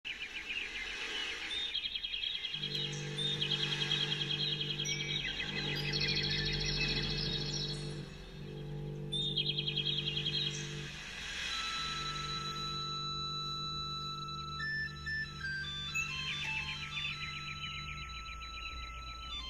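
Instrumental backing-track intro: sustained low synth chords that change every few seconds, with fast high bird-like chirping trills over them. About 14 seconds in, a falling run of bell-like chime notes begins.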